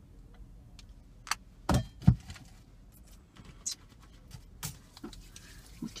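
A bunch of keys being handled, with scattered light clinks and a couple of louder knocks about two seconds in.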